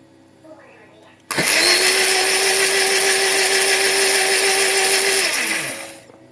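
Countertop blender liquefying a cucumber, celery and lemon juice. The motor switches on abruptly about a second in and runs steadily for about four seconds. It is then switched off and spins down, its pitch falling as it stops.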